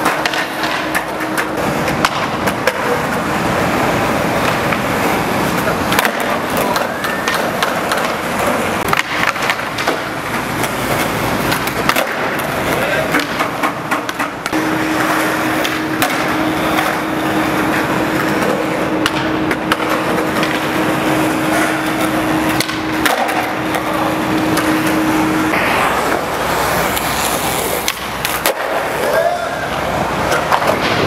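Skateboard wheels rolling over rough concrete, with the clatter and knocks of the deck on pops and landings throughout, and voices in the background.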